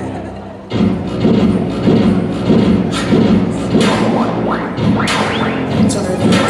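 Hip-hop dance track starting over PA speakers in a large gym, kicking in suddenly about a second in. It has a heavy beat about twice a second, with rising sweeps near the end.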